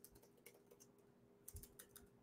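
Faint computer keyboard keystrokes: a few scattered taps, with a small run of them about one and a half seconds in, over a faint steady hum.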